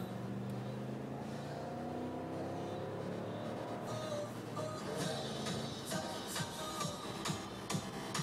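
Music playing through the car's stereo inside the cabin, with a steady drum beat coming in about five seconds in.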